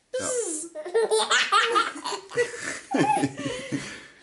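A six-month-old baby laughing in a run of repeated bursts that starts suddenly and goes on for nearly four seconds.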